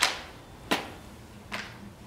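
Three sharp slaps, each fainter than the one before and each with a short echo: the color guard's gloved hands striking their drill rifles as they move to present arms.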